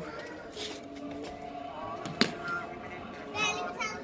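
Background chatter of children playing, with faint music underneath and one sharp knock about two seconds in.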